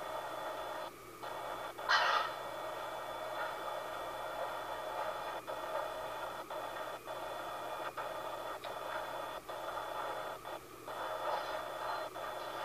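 Video monitor's speaker relaying the bedroom: a steady static hiss with faint steady tones, cut by brief dropouts several times, and one short louder rasp about two seconds in.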